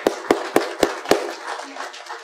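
Audience applauding, with one nearby person's sharp claps standing out about four a second. The near claps stop a little past one second in, and the applause thins out near the end.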